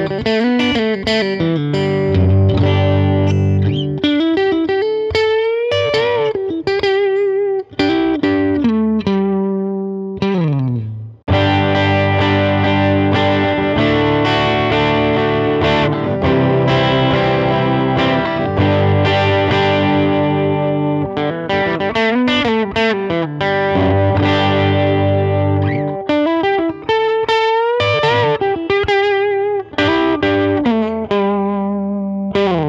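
Electric guitar played through a Mesa Boogie California Tweed tube combo with a 10-inch speaker, on its 15-watt setting with the gain set just at the edge of breakup, giving a tone with a hair of natural overdrive. The lines are played with string bends and vibrato. A Fender Telecaster plays first; after a brief break about eleven seconds in, a Gibson ES-335 takes over.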